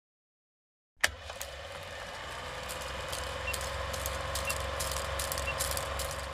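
Old film projector sound effect: a click about a second in, then a steady mechanical whir over a low hum with dense crackling and a faint tick about once a second.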